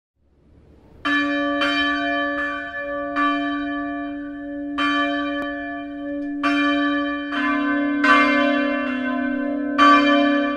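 Church bells ringing, starting about a second in with irregular strikes that each ring on. A second, lower-pitched bell joins about seven seconds in.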